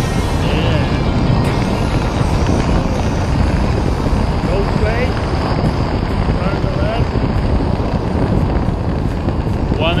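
Steady wind noise rushing over a camera microphone during parachute canopy flight, with faint voices under it.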